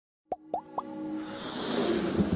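Three quick pops, each rising in pitch, about a quarter second apart, followed by a swelling whoosh that grows steadily louder: the sound effects of an animated logo intro.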